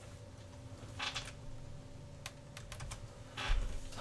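A few irregular keystrokes on a computer keyboard as a search is typed, with a soft low bump near the end.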